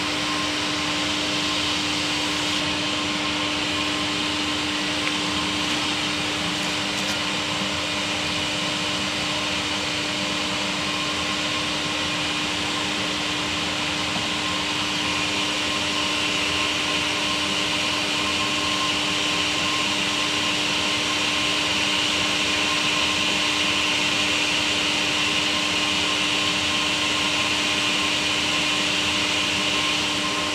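Steady machine whir from a motor running continuously, with a constant low hum and a hiss over it.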